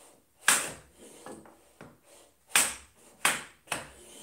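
Metal bench plane shooting end grain on a wooden shooting board: four short, sharp cutting strokes, one about half a second in and three in quick succession in the second half, with fainter sliding sounds between. The sharp iron is taking thin end-grain shavings rather than dust.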